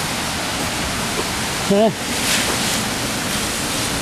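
Steady rushing noise outdoors, with a man saying "yeah" once near the middle.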